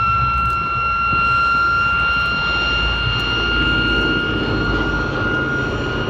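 Boeing B-17 Flying Fortress's four Wright Cyclone radial engines droning steadily as the bomber makes a low pass. A steady high-pitched whine sits above the engine sound.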